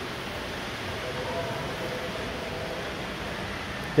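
Shopping-mall corridor ambience: a steady background hiss of the large indoor space, with faint distant voices about a second in.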